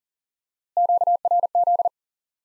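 Morse code sidetone, one steady mid-pitched note keyed on and off, sending 'QRZ' once at 40 words per minute. It starts about three quarters of a second in and lasts just over a second.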